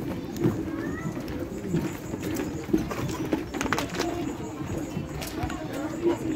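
Birds calling repeatedly in low, steady tones over faint voices, with a few sharp knocks near the middle.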